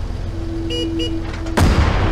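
Intro sound design: a steady hum-like tone with two short horn-like toots near the middle, then a sudden heavy impact hit with a deep boom about one and a half seconds in, ringing out as the logo appears.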